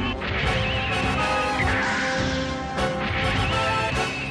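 Anime robot transformation soundtrack: repeated metallic clanks and crashing sound effects over dramatic background music.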